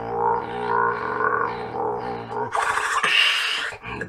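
Beatboxer's vocal drone: a didgeridoo-style throat bass held steady while the mouth shapes it into a rhythmic wah about twice a second. About two and a half seconds in it cuts off into a long, loud hiss that ends just before the close.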